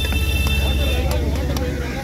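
Fish-market din: a vehicle engine runs with a steady low rumble that stops near the end, under background voices. A steady high tone sounds in the first half, and there are a few light knocks of a cleaver on the wooden cutting block.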